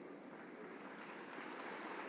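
Faint, steady room noise: an even hiss with no distinct events that grows slightly louder toward the end.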